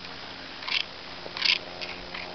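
Two brief swishing rustles close to the microphone, the second longer and louder: steps through tall grass brushing the legs of the person filming.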